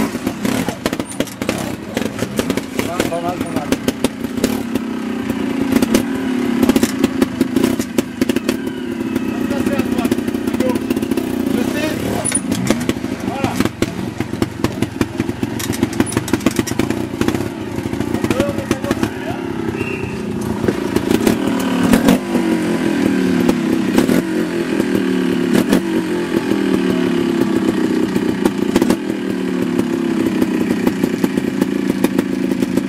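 Trials motorcycle engine revving up and down in repeated short blips, with sharp knocks and clatter as the bike is worked over rocks.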